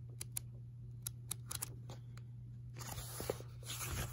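Pages of a paperback coin guide book being thumbed through: a string of soft, irregular paper ticks as the pages slip past the thumb, giving way to a denser paper rustle near the end.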